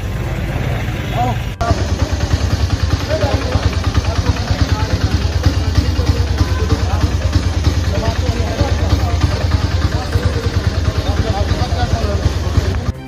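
An auto-rickshaw's small engine running at idle with a rapid low throb, under the voices of several men talking. The sound breaks off suddenly about a second and a half in and comes back louder.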